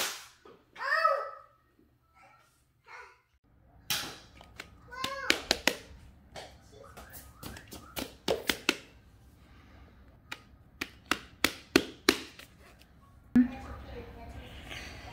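Thick cardboard jigsaw puzzle pieces being set down, slid and pressed into place on a wooden floor: an irregular run of sharp taps and clicks.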